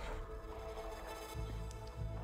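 Soft background music of sustained tones, with a low bass note coming in near the end.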